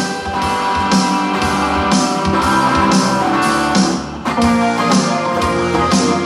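Live band-style music led by a strummed electric guitar in an instrumental break, with a steady beat of about two accents a second and a short dip in level about four seconds in.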